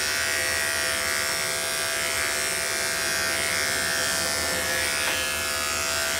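Electric dog-grooming clippers running with a steady, even hum, cutting a goldendoodle's coat short against the grain behind the elbow.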